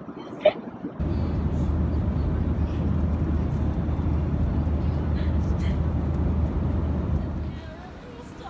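Airliner cabin noise: the steady low rumble of jet engines and airflow, starting abruptly about a second in and fading near the end. A brief sharp click comes just before it.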